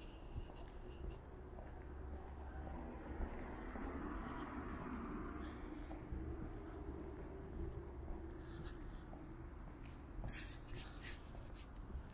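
Quiet city night ambience: a low steady hum of distant traffic with a broad swell of sound about four seconds in. Over it come the light scuffs and clicks of footsteps on pavement, with a cluster of sharper clicks near the end.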